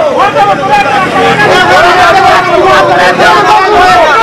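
Several people talking loudly over one another, with crowd hubbub behind.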